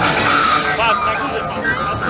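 Stunt motorcycle tyres screeching in a short skid about half a second in, with a few squealing chirps just after, over loud show music.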